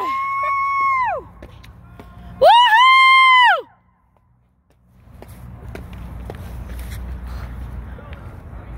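Two long, high-pitched cheering whoops, each held on one pitch, the second louder than the first; after a moment of near silence, a low steady outdoor rumble.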